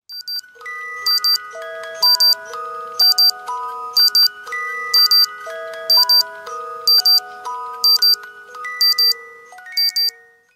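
Short electronic outro jingle: a melody in clear, bell-like tones over a steady tick, two quick high ticks each second, fading out near the end.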